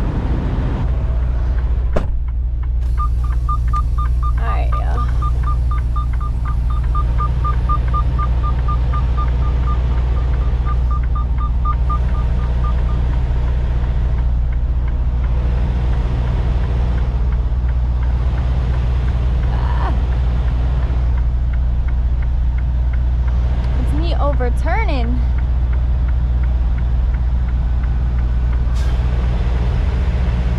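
Semi-truck diesel engine running steadily, heard from inside the cab. A sharp click comes about two seconds in, followed by a rapid electronic beeping, about four a second, for roughly ten seconds.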